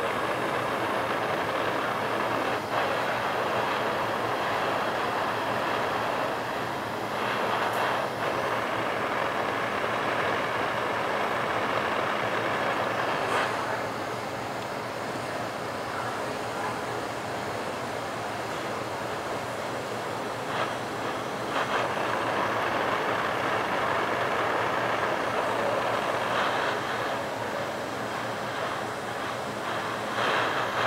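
Glassblowing bench torch burning steadily while it heats borosilicate glass tubing, a continuous rushing hiss that gets a little quieter about halfway through.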